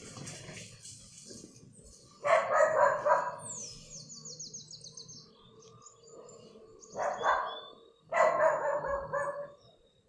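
A dog barking in three bouts: about two seconds in, again around seven seconds, and once more just after eight seconds.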